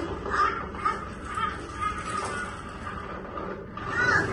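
Soundtrack of a projection-mapped table dinner show played through the room's speakers: a string of short chirping calls, about two a second, over a steady low background.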